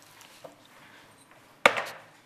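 A small ball striking a hoop's rim: one sharp knock about one and a half seconds in, after a stretch of quiet room tone.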